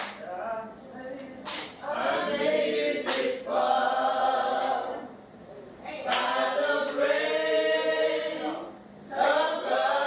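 A group of voices singing unaccompanied, holding long notes in phrases that break off briefly about five and nine seconds in.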